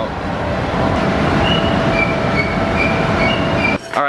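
Powder-coating shop machinery running with a loud, steady roar and a faint steady hum, with a few short high squeaks in the middle; it cuts off shortly before the end.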